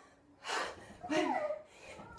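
A short breathy gasp about half a second in, then a brief high voiced sound falling in pitch: a person's gasps and vocalising under the effort of lifting a heavy child.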